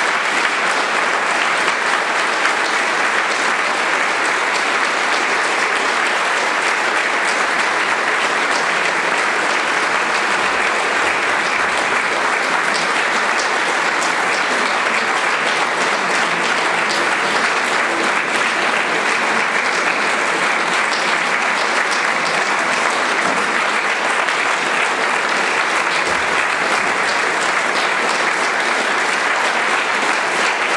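Audience applauding, a steady, even clapping that holds its level without a break.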